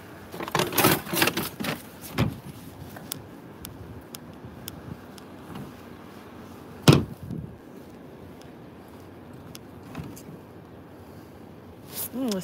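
Cardboard boxes and plastic mailers rustled and shifted in a plastic recycling cart, with a short bump about two seconds in. About seven seconds in comes a single loud thump as the plastic lid of a wheeled trash cart is swung open.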